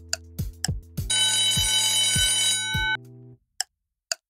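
An alarm-bell ringing sound effect plays for about a second and a half over upbeat background music with a steady beat, marking the quiz countdown running out. The music then stops, and a clock ticking about twice a second starts near the end.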